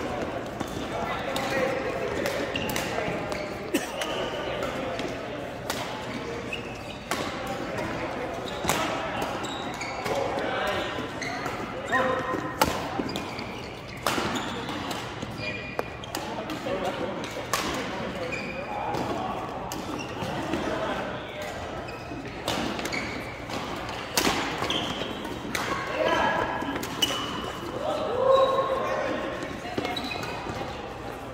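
Badminton rackets striking a shuttlecock during doubles rallies: sharp cracks at irregular intervals, echoing in a large sports hall, over a background of players' voices.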